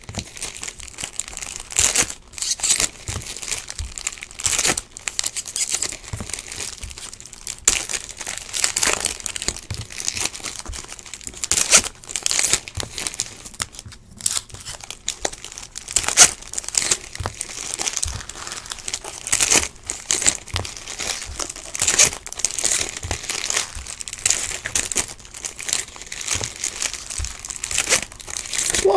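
Trading-card pack wrappers being torn open and crinkled by hand, in irregular rustling bursts that come and go throughout, with cards shuffled between them.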